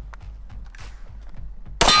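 A single shot from a Vis 35 (Radom) 9×19mm semi-automatic pistol near the end, followed by a steady metallic ringing of several tones that goes on after the shot.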